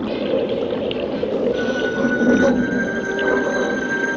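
Eerie film score of held high tones coming in about a second and a half in, over an underwater bubbling rumble of a diver's breathing.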